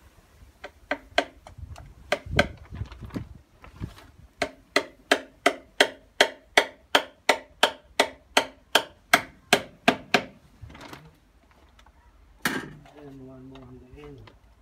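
Hammer driving nails into timber on the side of a deck: a few irregular lighter taps, then a steady run of about sixteen harder ringing blows at a little under three a second, stopping about ten seconds in.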